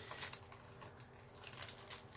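Faint, scattered crinkling and light clicks of plastic packaging being handled.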